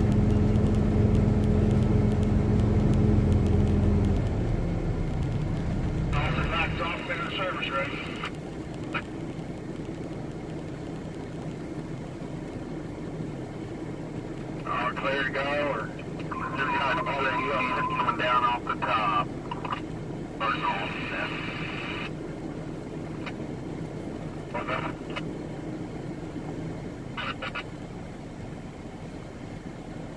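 Semi truck's diesel engine running with a steady hum that drops sharply about four seconds in to a much quieter low rumble. Short stretches of talk-like voice sound come and go over it.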